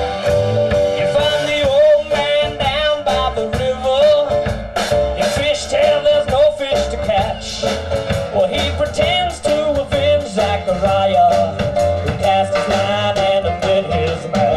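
A small band playing an instrumental passage: drum kit keeping a steady beat, upright bass walking underneath, and a sustained, wavering melody line on top.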